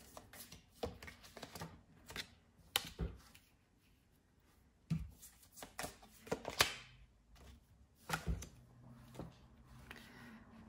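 Tarot cards being drawn and laid one by one onto a spread on a table: irregular short, papery slaps and slides.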